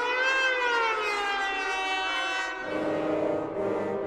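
Concert recording of a trombone concerto: several brass tones glide slowly up and down together in wavering, siren-like glissandi. About two and a half seconds in, a dense held orchestral chord with lower instruments takes over.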